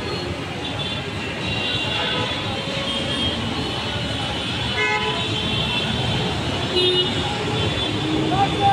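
Road traffic with car engines running and moving through, with a short horn toot about five seconds in and voices from people standing around.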